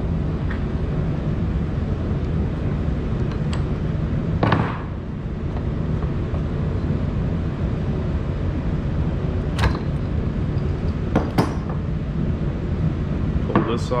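A two-jaw puller working the end bell off a Gast rotary vane aerator motor: a scattering of sharp metallic clicks and knocks from the puller and the motor's metal parts, the loudest about four and a half seconds in. A steady low hum runs underneath.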